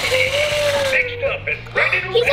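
A child's long, drawn-out exclamation, rising slightly and then falling in pitch, over a hissing noise that fades out about a second in.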